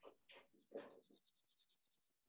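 Faint pencil strokes scratching on sketchbook paper, with a quick run of short back-and-forth shading strokes about a second in.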